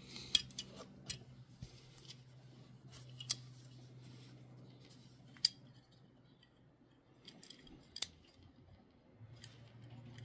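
Small sharp clicks and ticks from a 1:64 diecast Datsun 510 wagon model being handled and taken apart in the fingers, its metal body, baseplate and plastic parts knocking and snapping against each other. The clicks come irregularly, the sharpest about five seconds in, with a quick cluster a little later.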